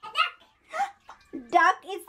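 A young child's voice making short high-pitched vocal sounds three or four times, with quiet gaps between.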